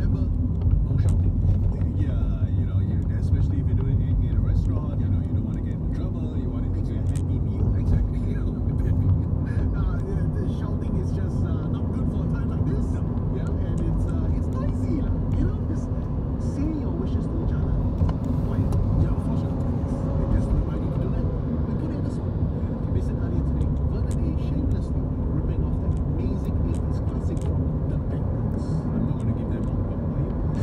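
Steady low rumble of road and engine noise inside a moving car's cabin, with indistinct talk underneath.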